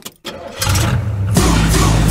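A car engine starting as a sound effect in a song's mix: a short gap, then cranking that catches into a low, steady running rumble, stepping up sharply about one and a half seconds in.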